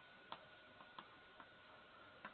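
Faint, irregular taps and clicks of chalk on a blackboard while words are being written, about five light strikes in two seconds.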